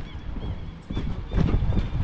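Footsteps on a paved walkway, with wind buffeting the microphone.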